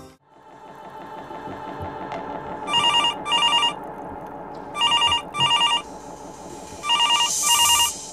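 Cordless landline phone ringing with a warbling electronic tone in short double rings: three pairs, about two seconds apart.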